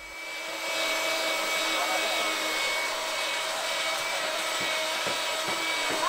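A small motor running steadily, a constant whine over a hiss, fading in at the start. Faint voices sound behind it near the end.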